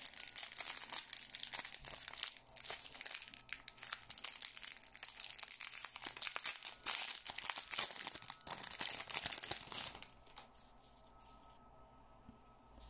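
Thin clear plastic wrapping crinkling as it is worked open by hand off a small round nail-art decoration case, an irregular crackle that stops about two seconds before the end.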